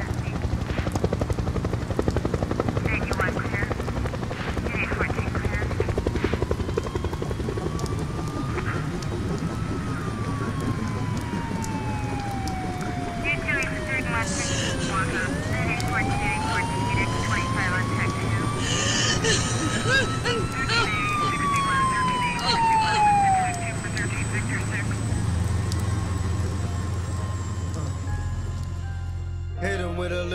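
Street sound effects: a helicopter's rotor running steadily underneath while an emergency siren wails slowly up and down twice through the middle.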